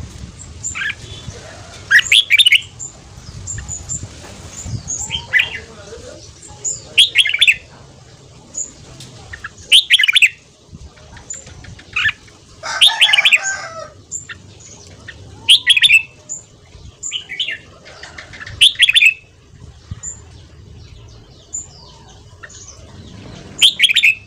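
Red-whiskered bulbul singing short, loud chirping phrases every second or two, with a quieter gap shortly before the end.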